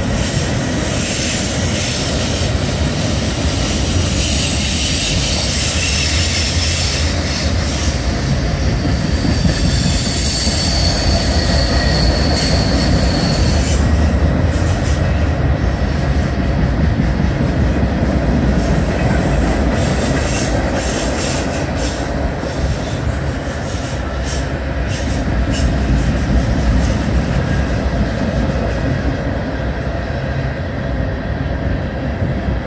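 Freight train cars rolling past with a steady rumble and wheel squeal; a high thin squeal holds for a few seconds about ten seconds in, and a run of sharp clicks from the wheels follows in the second half.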